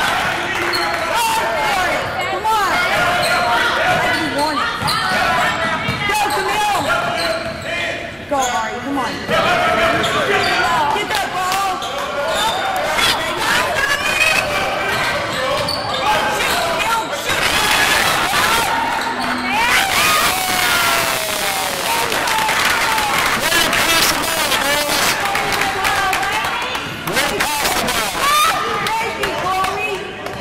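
A basketball bouncing on a hardwood gym floor during play, with players and spectators calling out in the echoing hall.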